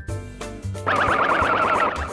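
Bouncy children's background music with plucked notes and bass. About a second in, a loud cartoon sound effect cuts in: a fast, rapidly repeating warble lasting about a second.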